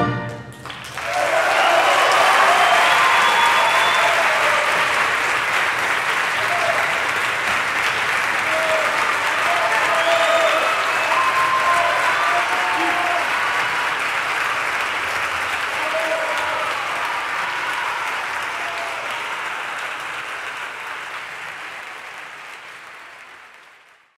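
Concert-hall audience applauding loudly, with scattered shouts of cheering over the clapping, starting about a second in once the orchestra's final chord has stopped. The applause fades out toward the end.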